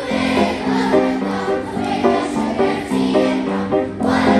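Children's choir singing a song together over instrumental accompaniment, with held notes and a steady beat of accompanying chords.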